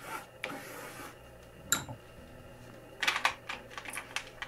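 A drawing crayon scratching over thick paper in short strokes, then a single sharp click and, near the end, a quick run of clicks and rattles as crayon sticks are picked through in their box.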